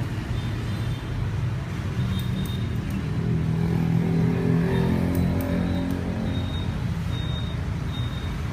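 Steady low rumble of road traffic that swells in the middle as a vehicle passes, with a few faint sharp clicks.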